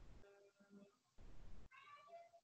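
Faint, short pitched calls from an animal, a few in a row, with patches of low background noise from an open call microphone.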